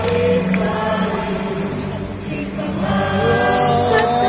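A large choir singing sustained, slowly moving notes over a symphony orchestra, performed live and heard from the audience seats of a large arena.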